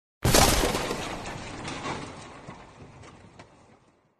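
Shattering-and-crashing sound effect from an animated outro: a sudden crash about a quarter second in, then scattered small clicks of debris as it fades out over about three and a half seconds.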